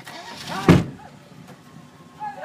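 A single loud thump, sharp and sudden, about two-thirds of a second in, over low background noise.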